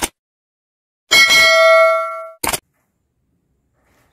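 Subscribe-button animation sound effects: a short click, then a bell ding that rings for about a second and fades, then another short click.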